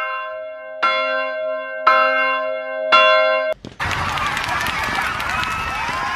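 A bell struck about once a second, each strike ringing on until the next. About three and a half seconds in, it cuts off abruptly and a dense noisy stretch with crackles and whistling tones takes over.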